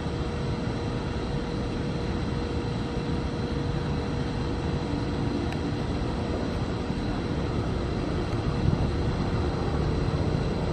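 Diesel locomotive approaching slowly, a steady low rumble with a thin, steady hum running through it.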